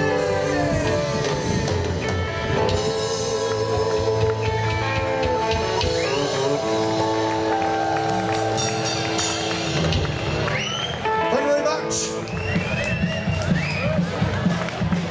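Live rock band playing with a singing voice: electric guitars, bass and drums under long held notes, one of them wavering with vibrato about four seconds in.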